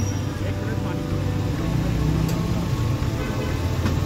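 Steady low rumble of street traffic and idling vehicle engines, with voices in the background.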